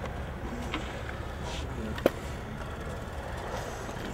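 Steady low background rumble of an outdoor skatepark, with a faint click just under a second in and a sharper click about two seconds in.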